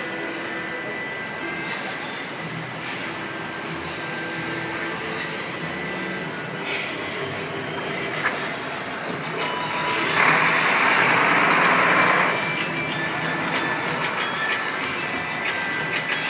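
Soft held notes of the light show's music playing over city street traffic, with a loud hiss lasting about two seconds roughly ten seconds in.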